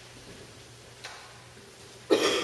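Quiet room tone with a steady low hum and one faint click about a second in.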